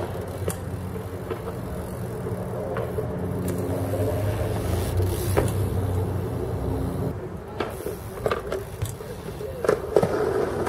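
A motor vehicle engine running with a steady low hum, which eases after about seven seconds. Several sharp clicks come in the second half.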